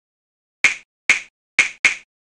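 Four sharp snaps, each short and dying away at once, starting just over half a second in and about half a second apart, the last two closer together.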